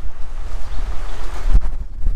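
Strong wind buffeting the microphone of a riding e-bike, a loud low rumble with a hiss above it, with one short low thump about one and a half seconds in.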